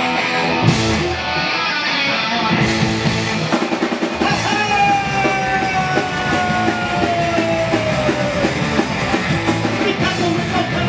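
Punk rock band playing live: distorted electric guitars and a drum kit at full volume, with a long note sliding slowly down in pitch through the middle.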